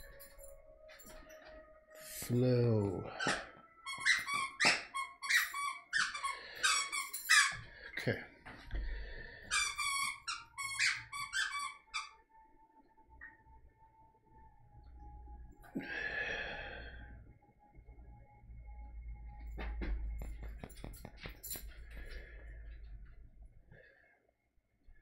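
A run of short, sharp high-pitched squeaks, about two a second for some eight seconds, after a lower drawn-out note; a single squeal follows a few seconds after the run stops.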